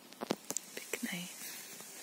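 A small pocket knife scraping and trimming the stem of a freshly picked mushroom, a handful of short clicks and scrapes in the first second, with a faint whispered voice.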